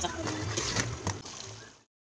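Water sloshing into a pot of boiling palm-nut (banga) soup as it is added, a liquid noise with a few light knocks that stops abruptly shortly before the end.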